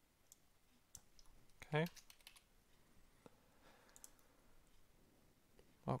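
Faint computer keyboard keystrokes and clicks: a few scattered taps, a quick run of them about two seconds in, and another small cluster near four seconds.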